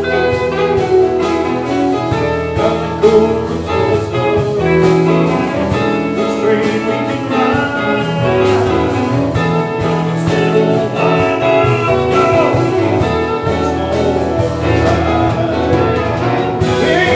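Live band playing a song: drum kit keeping a steady beat under electric guitars, electric bass and keyboards.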